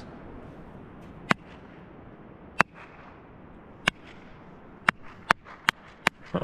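A person clapping their hands, one sharp clap at a time: about six claps, a second or more apart at first, then quicker near the end, over a steady background hiss.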